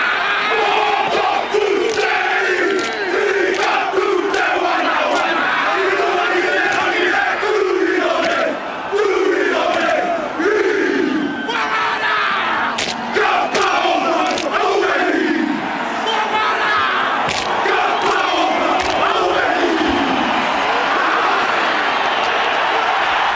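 A rugby team performing a haka: a large group of men chanting and shouting in unison, in repeated rhythmic calls that fall in pitch, with occasional sharp slaps of hands on bodies.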